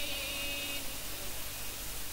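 The end of a chanted Quran recitation phrase fading out within the first second, followed by a steady hiss.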